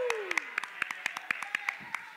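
Hands clapping in quick succession, about six claps a second, while a voice's falling exclamation trails off in the first half-second.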